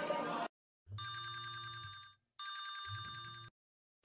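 Telephone ringing twice, each ring a fast electronic trill about a second long with a short gap between.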